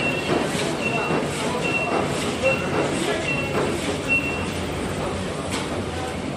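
Medical paper-plastic bag making machine running with a dense, steady mechanical noise, while a short high beep repeats about every 0.8 seconds, six times, and stops about four seconds in.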